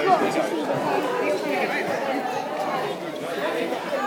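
A babble of several people talking over one another, with no single clear voice.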